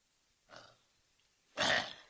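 A man clears his throat with a short, harsh rasp about a second and a half in, after a faint brief vocal sound half a second in.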